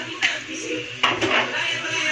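Two light knocks of a plastic bottle and plastic turntable tray against a stainless steel counter, one about a quarter second in and one at about a second.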